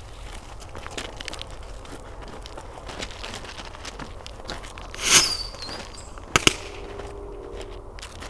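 A firework set off in a can sputters and crackles as it burns. About five seconds in it lets out a short loud hissing burst with a brief falling whistle, followed a second later by two quick sharp pops.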